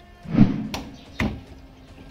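Plastic wiring plug being pulled off and pushed back onto an ignition coil's terminal by hand: a knock about half a second in, then two sharp clicks as the connector snaps into place.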